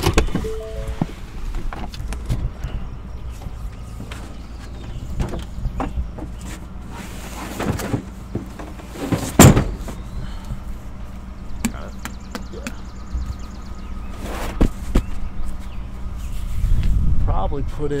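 Knocks and thumps of a heavy foam archery block target being handled on a pickup's metal tailgate, with one loud thump about halfway through, over background music.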